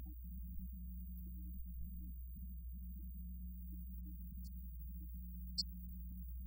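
A steady low hum, with a brief faint tick near the end.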